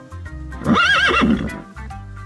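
A horse whinnying once: a loud neigh of under a second with a rapidly wavering pitch that drops off at the end. Background music with a steady beat plays underneath.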